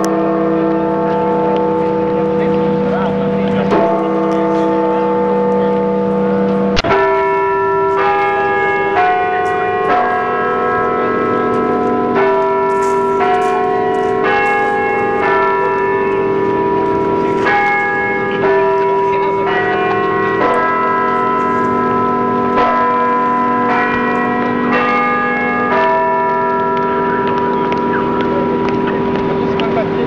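A tune in held bell-like chime tones. It opens with two long sustained chords over the first seven seconds, then moves to a melody changing note about once or twice a second.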